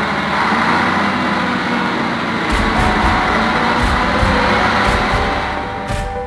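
Crane truck's engine running under load as its crane hoists a large fishing net, with a heavier low rumble coming in about halfway through.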